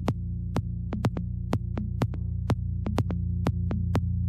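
Melodic deep house music: a steady low bass drone under crisp percussion ticks about twice a second, with lighter extra hits between them.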